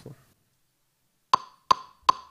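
Near silence, then a little over a second in, drumsticks clicked together twice in an even, fast count-in pulse, each click short and bright with a slight ring.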